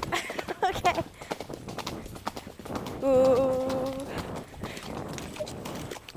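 Pony hooves clip-clopping at a brisk pace on a gravel track, heard from a helmet-mounted camera. Brief voice sounds come in the first second. A steady, single-pitch call lasts about a second halfway through and is the loudest sound.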